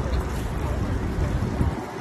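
Low, gusty rumble of wind buffeting the microphone over a steady hum of city street noise. The rumble dies down about a second and a half in.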